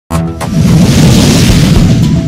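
Loud explosion-like sound-effect stinger of the kind used in news-video transitions: it starts suddenly with a couple of sharp hits and a brief pitched tone, then runs on as a dense rumbling noise with a heavy low end.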